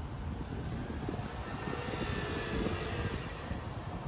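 City street traffic noise: a steady low rumble with a rushing sound that swells around the middle and eases off toward the end.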